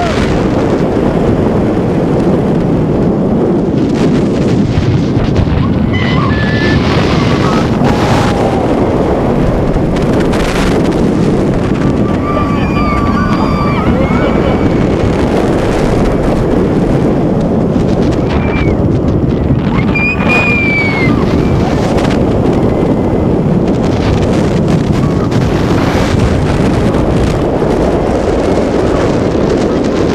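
Loud, steady rush of wind on a head-worn camera microphone in the front row of a Bolliger & Mabillard hyper coaster at speed, with the train rumbling along the steel track. Riders shout and scream briefly several times.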